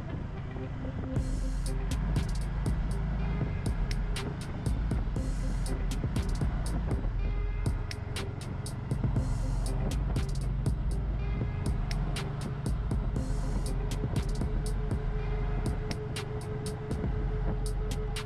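Background music over the running engine and road and wind noise of a Can-Am Spyder three-wheeled motorcycle being ridden. A steady low rumble lies under frequent sharp clicks.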